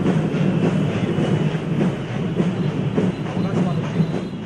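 A man's voice buried under loud, steady rumbling background noise.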